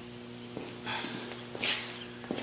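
Footsteps on a concrete shop floor with a few light knocks and a short rustle about a second and a half in, over a steady low hum.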